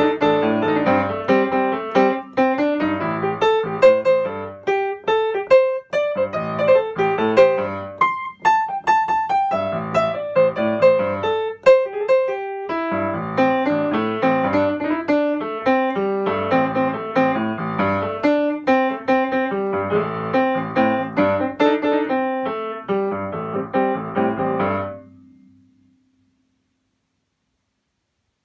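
Piano playing a funky jazz-blues improvisation, a repeating left-hand bass riff under right-hand runs. It stops about 25 seconds in and the last chord dies away to silence.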